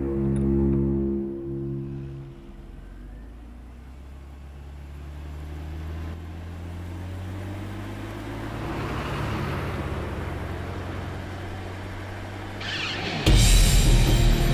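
Tense film score: sustained low drones that fade after about two seconds, leaving a quieter low hum with car road noise beneath, a swell of noise rising and falling in the middle, then a sudden loud hit near the end that opens a louder, busier passage.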